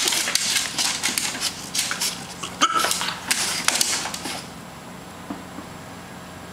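A French bulldog's claws and body scrabbling and rubbing against a molded shell chair seat as it wriggles and rolls: a rapid run of scratchy scuffs that stops about four and a half seconds in.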